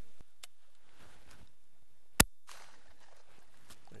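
A single shotgun shot at a passing dove, one sharp crack about two seconds in, over faint outdoor background with a few light ticks.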